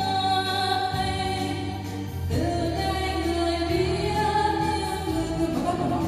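A karaoke song playing over a newly installed JBL hall loudspeaker system: a steady backing track with a sung melody line of held, gliding notes.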